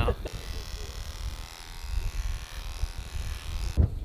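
Electric hair clippers running steadily, shaving a camel's coat. The buzz cuts off near the end.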